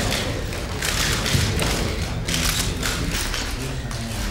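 Thumps and rustling noise from a crowd of reporters and camera crews jostling in a room, with knocks and handling noise on the microphone.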